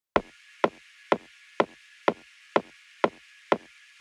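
Electronic dance track intro: a single drum-machine hit repeating evenly about twice a second, over a steady hiss of high noise.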